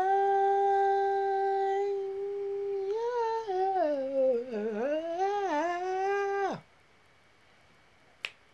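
A man singing without words in a high voice, holding one long note for about three seconds, then running down and back up in a wavering melisma before stopping abruptly about six and a half seconds in.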